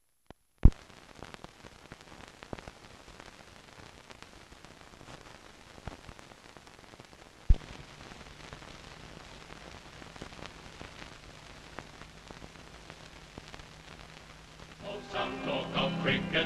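Crackle and hiss of an old film soundtrack running over the countdown leader, with two sharp loud pops, the second about seven and a half seconds in, after which a low steady hum sets in. Music starts about a second before the end.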